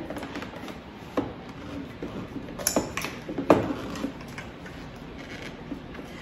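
Plastic parts of a food processor clicking and knocking as its lid and feed-tube pusher are handled, several sharp clicks spread over the first four seconds, the loudest about three and a half seconds in.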